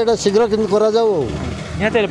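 A man speaking Odia into a microphone, with a low hum of road traffic behind him, heard plainly in a short pause in his speech.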